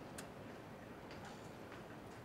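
Quiet room tone with a few faint, light clicks.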